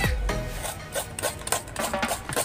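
Fresh coconut meat being rubbed and scraped by hand in short, irregular strokes, with music underneath.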